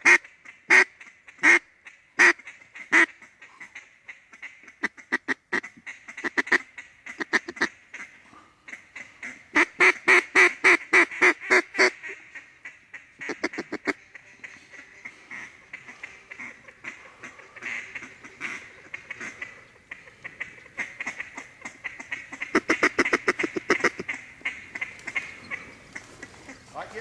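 Mallard duck call blown in a series of loud, evenly spaced quacks, then a fast run of short quacks about ten seconds in and another run near the end: a hunter calling to ducks.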